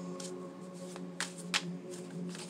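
A tarot deck being shuffled by hand, with a few sharp card flicks and snaps near the start, about a second in and, loudest, about a second and a half in. A soft, steady tone of background music runs underneath.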